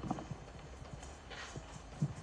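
A man crying close to a handheld microphone: quiet broken breaths and small knocks, with a sniff about one and a half seconds in.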